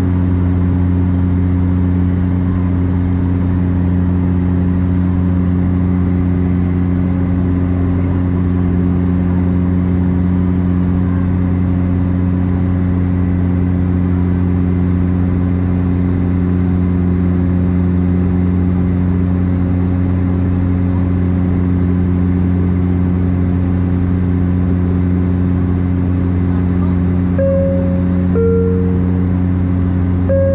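Cabin drone of a Bombardier Dash 8 Q400's Pratt & Whitney PW150A turboprop and six-blade propeller in flight, heard from a seat beside the propeller: a loud, steady low hum in a few even tones. Near the end a two-tone cabin chime sounds, high then low.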